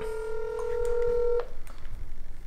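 Smartphone on speakerphone sounding a ringback tone for an outgoing call: one steady electronic tone that cuts off suddenly about one and a half seconds in.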